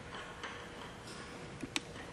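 A few light clicks and ticks as a small glass collection jar is twisted off a condenser outlet, the sharpest click about three-quarters of the way in.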